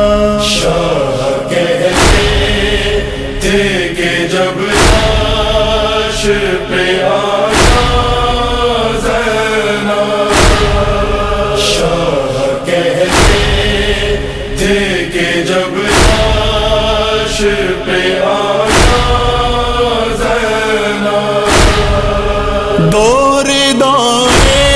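Wordless chanted vocals of an Urdu noha lament, a drawn-out melodic line, set over a deep thump that comes about every three seconds.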